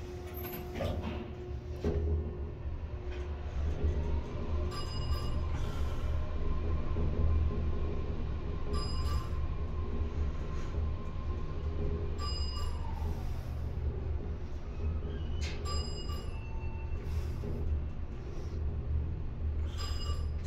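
Montgomery traction elevator car travelling up five floors: a low rumble of the ride with a motor whine that rises as the car speeds up, holds steady, then falls away as it slows. Short high-pitched tones sound four times along the way.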